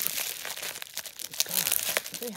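Crumpled newspaper and bubble-wrap packing crinkling and rustling as a parcel is unpacked, a dense run of small irregular crackles.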